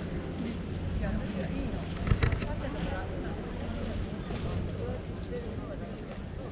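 Wind rumbling on the microphone, under the faint voices of other people talking, with a brief knock about two seconds in.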